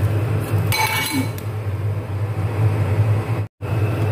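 A metal pot lid clinks against a stainless-steel wok about a second in, ringing briefly as the wok is covered. A steady low hum runs underneath.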